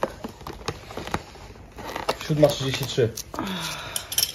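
Cardboard door of a Kinder advent calendar being pulled open and the foil-wrapped chocolate egg inside handled: a run of crinkling and sharp clicks in the first two seconds, then voices.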